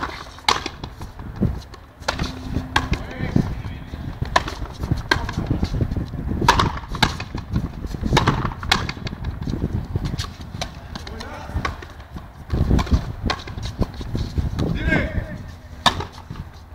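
Frontenis rally: a series of sharp cracks as the rubber ball is hit with strung racquets and bounces off the front wall and concrete floor, coming at irregular intervals with a short lull about ten seconds in.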